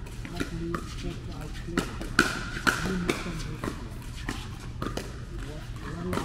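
Pickleball paddles hitting a plastic ball during a doubles rally: sharp pops at irregular intervals, echoing in a large indoor hall. Men's voices call out among the hits, loudest about two to three seconds in.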